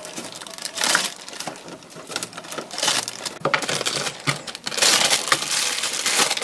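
Clear plastic zipper bag crinkling and rustling while sliced rice cakes for tteokguk are put into it, with short clicks of the slices dropping in; the rustling is loudest about a second in and again near the end.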